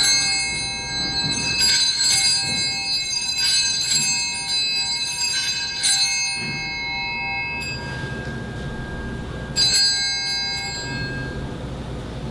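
Altar bells rung at the elevation of the chalice just after the consecration: bright ringing struck in a string of shakes over the first six seconds, then once more about ten seconds in, each ring fading out.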